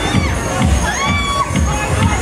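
Riders on a spinning thrill ride screaming, several rising screams in the first second and a half, over loud fairground dance music with a steady beat.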